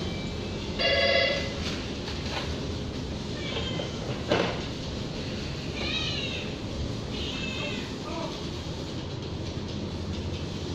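Kittens mewing: a few short, high calls that rise and fall, with a sharp knock about four seconds in and a short steady beep about a second in.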